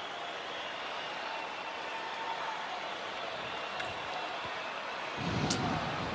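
Steady background murmur of a hockey arena crowd, swelling a little near the end, with one brief click.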